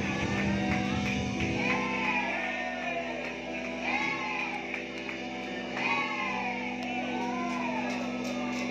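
Backing music played through a hall's loudspeakers, with a group of voices singing and calling out along with it over microphones. A beat in the bass stops about a second and a half in, and the singing carries on over the steady accompaniment.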